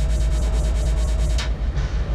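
A steady low rumbling drone, with a sharp click at the start and another about a second and a half later, and a thin steady tone sounding between the two clicks.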